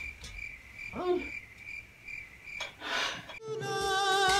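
A faint high-pitched chirp repeating about four times a second, with a brief vocal sound about a second in. Music with singing cuts in near the end.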